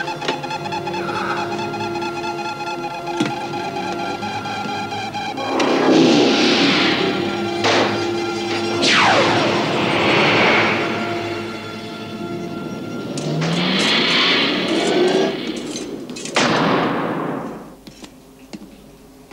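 Film soundtrack: held music notes, then a series of loud whooshing sound effects, several sweeping down in pitch, as a capsule is launched from a spacecraft.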